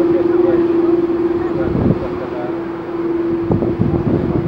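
KLM Airbus A330-200 jet engines at taxi power, with a loud steady whine, heard over gusting wind on the microphone.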